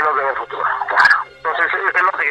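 Speech only: a man speaking Spanish over a telephone line, with a thin, phone-like sound.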